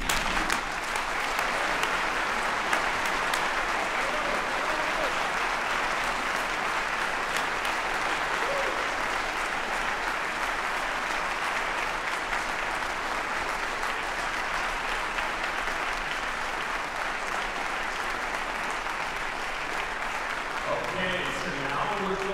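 Audience applauding in a concert hall. The applause starts suddenly, holds steady for about twenty seconds and eases slightly near the end.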